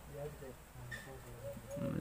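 A faint, low human voice murmuring in short, wordless snatches.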